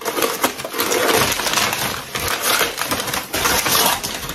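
Continuous crackling and crinkling of packaging as a ceramic plant pot is unwrapped and turned over by hand.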